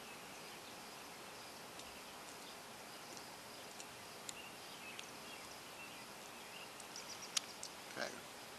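Faint steady outdoor background noise with scattered faint bird chirps, and a few light clicks from opening a plastic ketchup bottle, the sharpest a snap near the end.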